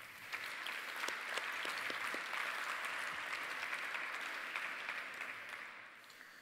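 Audience applauding: many hands clapping, swelling within the first second and fading away near the end.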